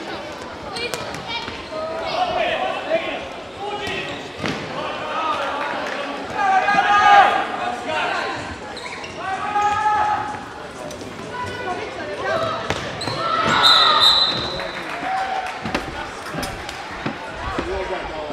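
A futsal ball being kicked and bouncing on the wooden floor of a sports hall, with short knocks among shouts and calls from players and spectators.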